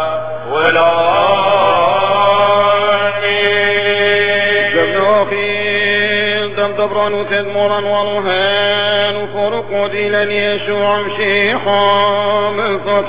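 A man's solo voice singing Syriac Catholic liturgical chant: one melodic line of long held notes that bend and turn, over a steady low hum.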